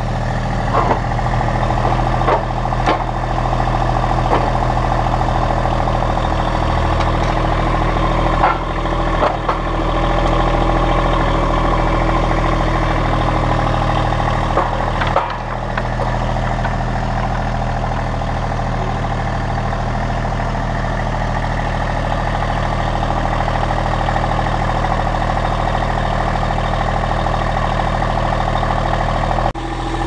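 Massey Ferguson GC1725M sub-compact tractor's three-cylinder diesel engine running steadily while its front loader works pallet forks under a wooden pallet and lifts it. A few short clunks come in the first half.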